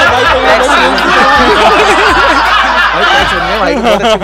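Several men talking loudly over one another and laughing.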